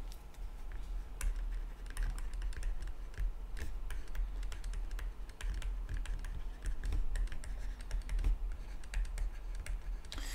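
Stylus tapping and scratching on a tablet screen while writing by hand: a run of light, irregular clicks over a low steady hum.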